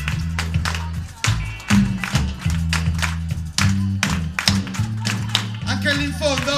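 Live band music: a steady bass line and drums with hand claps keeping time, about two a second.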